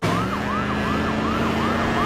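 Emergency-vehicle siren in city traffic, a fast repeating wail of about three to four cycles a second over the steady hum of engines. It starts suddenly and stays loud.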